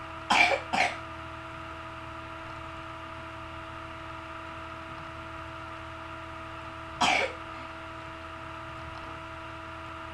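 A person coughing twice in quick succession, then once more about seven seconds in, over a steady background hum with a few fixed tones.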